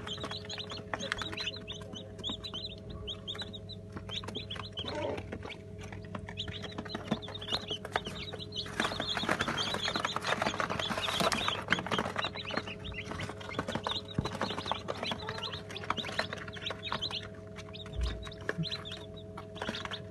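A brood of newly hatched Brahma chicks peeping continuously, many short high-pitched cheeps overlapping, busiest around the middle, over a steady low hum.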